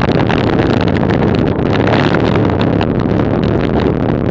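Steady wind buffeting on the microphone of a camera moving along with a bicycle ride, with road rumble and a continuous patter of small rattling clicks.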